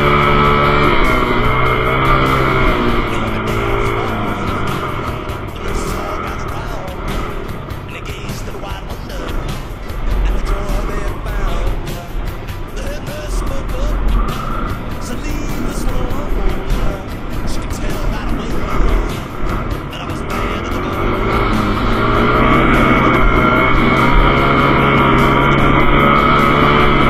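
Dirt bike engine running under way, its pitch rising as it revs near the start and again toward the end, with a rushing noise through the middle stretch.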